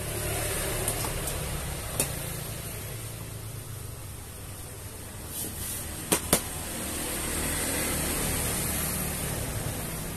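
Vinyl seat cover being stretched and rubbed by hand over a motorcycle seat's foam, a rustling that swells and fades. Sharp clicks come once about two seconds in and twice in quick succession past the middle, over a steady low background hum.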